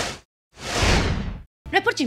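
Whoosh sound effect of a video transition: one whoosh fading out just after the start, then, after a brief silence, a second whoosh that swells and fades over about a second. A woman starts speaking near the end.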